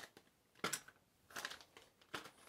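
Plastic bags crinkling as bagged die-cast toy trucks are picked up and set down: two faint, brief rustles.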